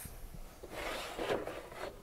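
Plastic slide-on extension table being slid off a Bernina sewing machine's free arm: faint rubbing and scraping, with a few light knocks.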